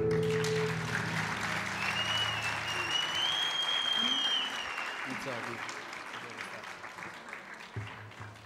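Audience applauding as the final chord of a nylon-string guitar ensemble rings out, the clapping slowly dying away. A single long whistle from the crowd rises out of the applause a couple of seconds in.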